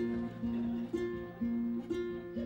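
Acoustic guitar played in a steady rhythm, its notes changing about twice a second.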